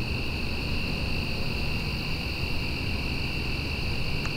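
Steady evening chorus of insects, a constant high shrill pitch with a fainter, higher band above it, over a low rumble.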